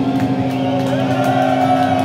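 A heavy metal band's distorted electric guitars holding a final chord that rings on steadily after the drums stop, at the end of a song.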